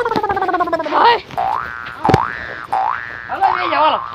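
Cartoon-style comic sound effects: a pitched glide falling over about a second, then three quick rising boing-like glides.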